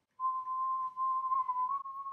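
A person whistling one long, nearly steady note that wavers slightly and rises a little at the end.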